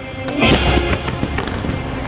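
Aerial fireworks bursting and crackling over the show's music, with one loud bang about half a second in followed by a few sharper cracks.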